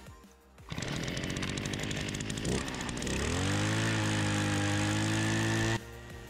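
Gas-powered ice auger's two-stroke engine running unevenly, then revving up about three seconds in and holding a steady high speed, until it cuts off abruptly near the end.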